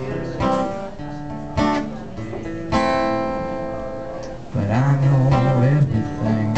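Acoustic guitar strummed. It starts with single chords left to ring about a second apart, then fuller, louder strumming begins about four and a half seconds in.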